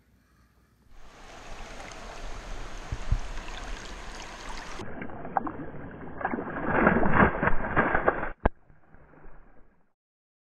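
River water rushing and splashing around a smallmouth bass held in the stream. The splashing is loudest from about six to eight seconds in, and a single sharp click follows near the end.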